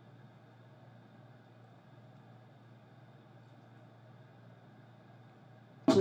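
Faint steady room hum with nothing else distinct. Just before the end, acoustic guitar and singing start suddenly and loudly.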